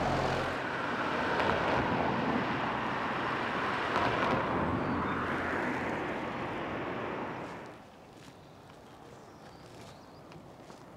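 A vehicle passing along the road, its engine hum giving way to tyre noise that swells and fades, then drops away suddenly near the end.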